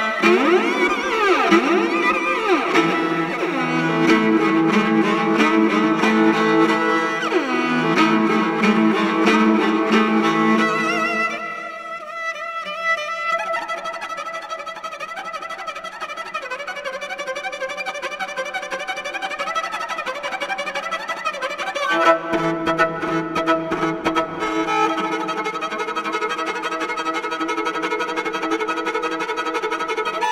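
Morin khuur (Mongolian horsehead fiddle) playing a fast, galloping piece with a Chinese traditional instrument ensemble. Sliding glides come in the first few seconds. The music drops to a quieter passage a little before halfway and swells back to full ensemble about two-thirds of the way through.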